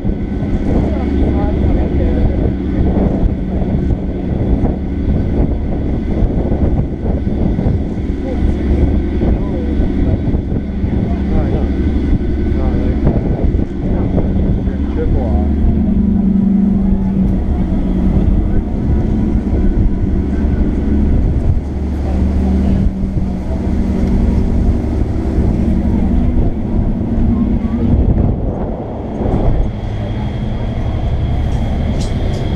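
Passenger ferry under way: its engines drone in a steady low rumble, with wind on the microphone and passengers' voices in the background.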